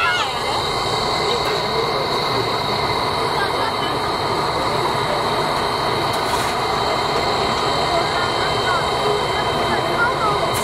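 Steady hiss and hum of the C57 1 steam locomotive standing in steam, with a few thin high whines held steady over it, and a crowd talking.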